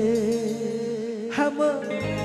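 Live band music with a male singer holding long wavering notes into a microphone; the bass drops out about halfway through, and a new sung phrase starts near the end.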